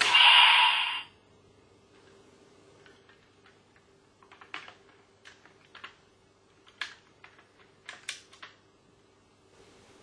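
Toy transformation belt (DX Forceriser) plays a short, loud electronic 'Open' effect through its speaker, lasting about a second. After that comes a string of sharp plastic clicks and knocks as the DX Zero-Two Unit is snapped onto the belt, most of them in the middle of the stretch.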